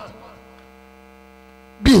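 Steady electrical mains hum, a low buzz of several fixed tones, from the sound system during a pause in speech. A man's voice starts near the end.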